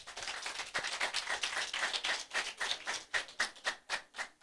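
Audience applauding: many hands clapping irregularly, thinning out near the end.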